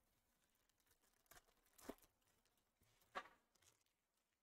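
Near silence, broken by a few faint, short crinkles and clicks of a foil trading-card pack being opened and cards handled, the clearest about two seconds in and just past three seconds.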